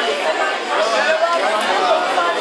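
Many people talking at once: overlapping crowd chatter of dinner guests, no single voice standing out.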